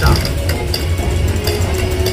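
Telegraph sounder clicking out Morse code in short, irregular clicks over a low steady hum.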